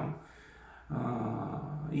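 A man's drawn-out hesitation sound "eh", held on one steady pitch for about a second after a brief pause.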